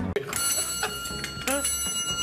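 TV show's transition jingle: a sharp hit just after the start, then a bright, bell-like ringing chord held through the rest, with a second hit about halfway through.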